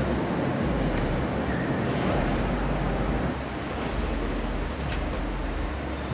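Steady low rumble and hiss of factory hall noise, easing slightly about halfway through.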